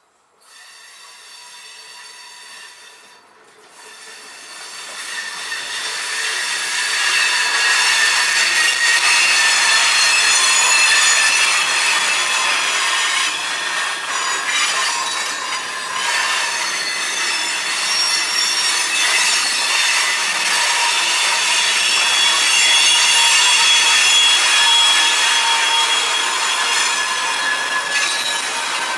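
Freight train cars rolling slowly past, with a chorus of steady high-pitched squeals from their steel wheels on the rails. The sound starts abruptly, dips briefly about three seconds in, then grows louder as the cars come alongside and stays loud.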